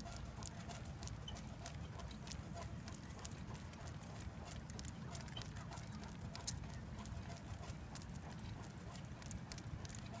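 A Great Dane trotting on asphalt while pulling a dog sulky: light irregular clicks of its nails and paws on the pavement, with one sharper click about six and a half seconds in, over a steady low rumble of the sulky's wheels rolling on the road.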